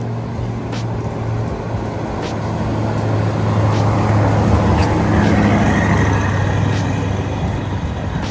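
Lamborghini Urus twin-turbo V8 SUV driving past at low speed. Its engine hum and tyre noise build to a peak about five seconds in, then fade.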